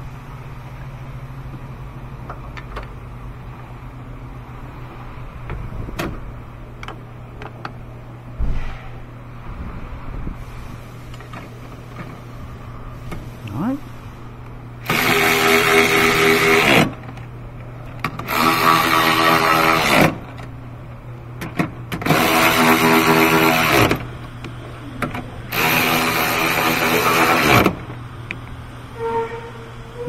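Milwaukee cordless ratchet running on a battery hold-down bracket bolt, four bursts of about two seconds each in the second half as the bolt is driven down and snugged. Before them there are only light handling clicks and knocks over a low steady hum.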